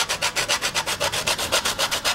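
A whole nutmeg rubbed quickly against a stainless steel box grater, rapid, evenly spaced rasping strokes as nutmeg is grated over a pan of sauce.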